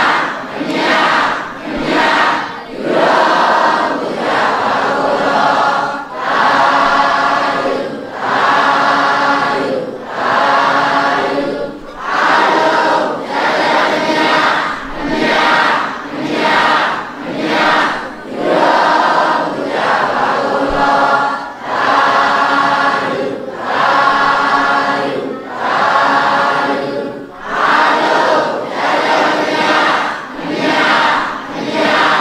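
A large congregation chanting together in unison: many voices in short repeated phrases at a steady rhythm, with a brief dip between phrases every second or two.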